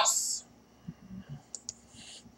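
The hissing end of a spoken word, then a few faint, scattered clicks about a second in.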